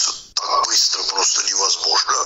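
Speech only: a person talking, with a brief pause about a third of a second in.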